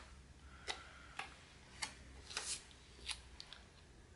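Faint paper-handling sounds as a planner sticker is peeled from its sheet and pressed onto a paper planner page: about half a dozen short scratchy ticks, spaced irregularly.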